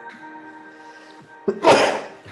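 Background music with steady held notes, cut across near the end by one short, loud sneeze.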